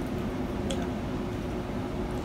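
Room tone with a steady low hum and one faint click about two-thirds of a second in.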